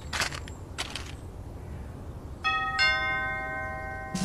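Doorbell chime sounding two ringing strikes about half a second apart, a little over two seconds in, with the tones ringing on. Before them there is a low background hiss and a couple of brief rustling bursts.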